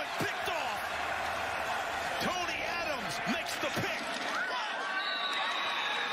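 Football field sound: overlapping shouts and calls from players and the sideline, with a held high tone about five seconds in.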